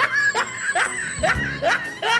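Snickering laughter: a run of short laughs, each rising in pitch, about two to three a second.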